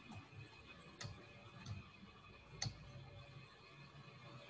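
Two faint, sharp computer-mouse clicks about a second and a half apart, the second louder, as the slideshow is advanced, over a faint low room hum.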